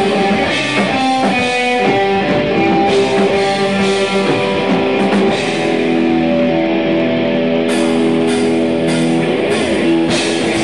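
Live rock band playing an instrumental passage: two electric guitars holding notes over a drum kit, with a run of cymbal hits near the end.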